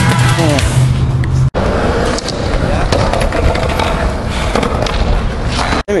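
Skateboard wheels rolling on a concrete skatepark with board clatter, with voices behind. The sound cuts out abruptly twice, about a second and a half in and just before the end.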